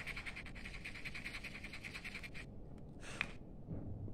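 Rapid back-and-forth scuffing of a nickel-plated aluminium bus bar by hand, abrading its passivated surface so solder can take. The scuffing stops about two and a half seconds in, and a short single scrape follows near the end.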